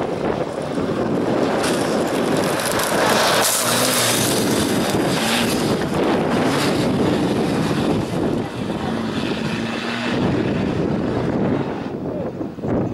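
Small slalom racing car's engine running hard as the car comes through the cone chicane, passes close by and pulls away, its pitch holding briefly and changing several times as it accelerates between the cones.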